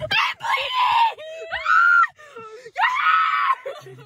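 A young woman's voice screaming three times in quick succession, high-pitched, each scream about half a second to a second long; staged, play-acted screams rather than real fright.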